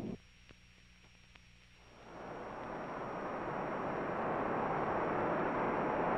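About two seconds of near silence with a faint low hum, then a steady jet-aircraft roar fades in and grows louder.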